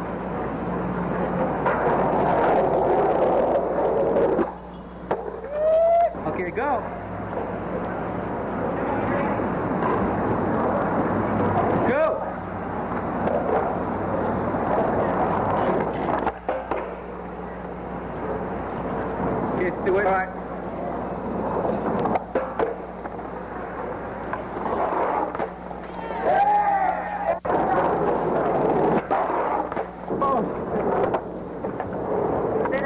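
Skateboard wheels rolling on pavement, picked up by an old camcorder microphone over a steady low electrical hum, with several sharp clacks where the sound suddenly drops or changes.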